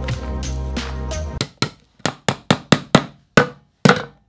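Background music that stops about a second in, followed by a hammer tapping the lid shut on a paint can: about a dozen sharp taps in quick succession.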